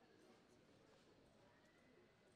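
Near silence: faint room tone with faint hoofbeats of a horse loping on soft arena dirt.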